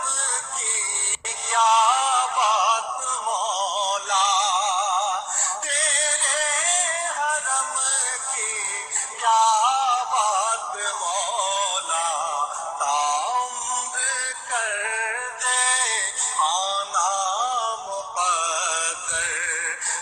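A solo voice singing an Urdu devotional naat in long, held notes with strong vibrato.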